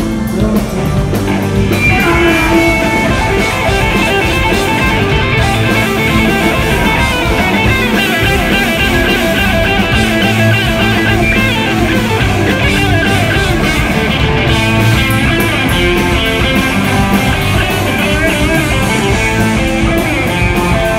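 Live rock band playing loud and dense, electric guitar to the fore over drums, recorded through a phone's microphone in the audience.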